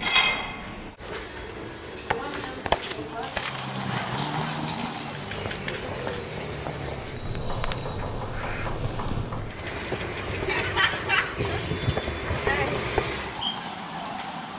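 Indistinct voices and background bustle, with scattered sharp clicks and clinks.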